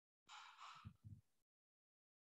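A faint, short exhale from a person, heard through a video-call microphone, with two soft low thumps about a second in. The line is dead silent around it.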